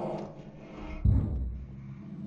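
A deep thud about a second in that fades away slowly, over a low rumble.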